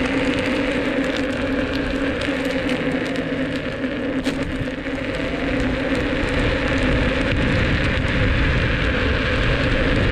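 Inmotion V10F electric unicycle rolling on coarse asphalt: a steady crackly tyre-on-road noise with a steady hum from the hub motor, its pitch gliding a little now and then, slightly louder in the second half.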